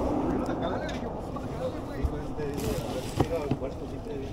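Outdoor background rumble with faint voices, and a couple of light knocks as hands go into a cardboard box of hats.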